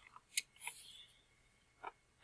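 A large picture-book page being turned and pressed flat by hand: a few faint paper rustles and sharp little clicks.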